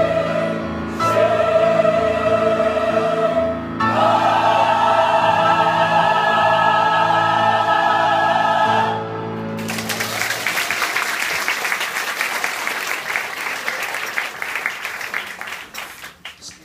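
Mixed church choir singing the final held chords of a hymn, the last chord stopping about nine seconds in. Applause from the congregation follows and gradually dies away.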